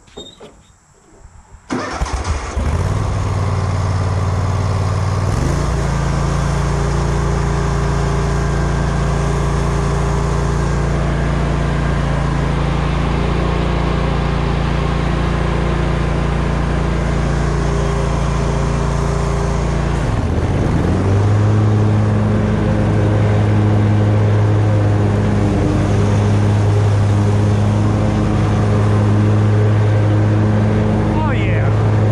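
Grasshopper zero-turn riding mower's engine starting about two seconds in, then running steadily. About twenty seconds in its note dips briefly and comes back higher and a little louder.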